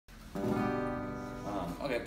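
Acoustic guitar: one chord strummed, ringing on and fading over about a second.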